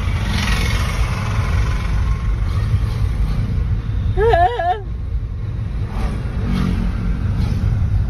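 A warbling vehicle horn sounds once, about four seconds in, for under a second, its pitch swinging up and down about three times. Under it is the steady rumble of engine and road noise from inside a car.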